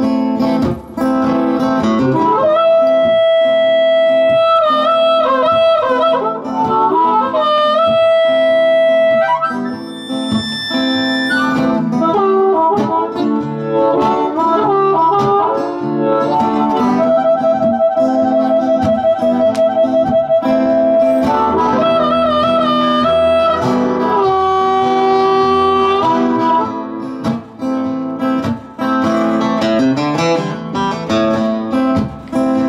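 Harmonica solo over acoustic guitar accompaniment: long held notes, some bent, with a fast warbling trill about halfway through.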